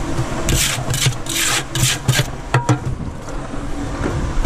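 Steel brick trowel scraping through freshly mixed sand-and-cement mortar in a turning cement mixer drum, about five rough strokes in quick succession followed by a sharp click, as the trowel tests whether the mortar has reached the right consistency. The mixer's low running rumble continues underneath.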